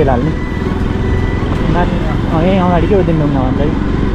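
Bajaj Pulsar NS200 motorcycle ridden slowly, its engine running steadily under a low rumble of wind on the helmet microphone. A voice sounds for a couple of seconds in the middle.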